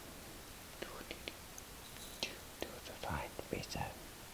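A person whispering in short, breathy bits, with a few small sharp clicks in between; it is busiest in the last second.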